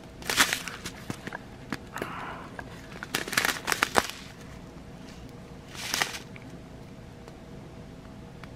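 Small plastic bag of round diamond painting drills being handled, the plastic crinkling in several short bursts with scattered clicks. The busiest stretch comes from about three to four seconds in, with a last burst near six seconds.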